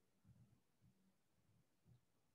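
Near silence, with a few faint, irregular low bumps.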